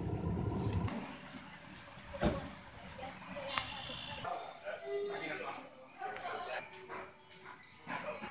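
Indistinct, faint voices over background noise, with a low vehicle rumble in the first second and a few scattered clicks.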